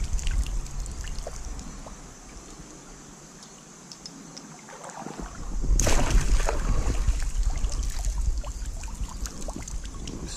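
A hand net swept through shallow creek water, splashing and sloshing, fading quieter for a few seconds, then a sudden loud splash about six seconds in as the net scoops again, followed by continued sloshing.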